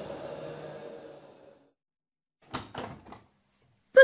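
Sound effect of a washing machine running down and fading out over the first second and a half. After a short silence come a few quick clicks and knocks, the machine's door being opened.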